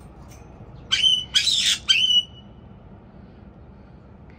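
White-bellied caique giving three loud, harsh squawks in quick succession about a second in, the middle one the longest.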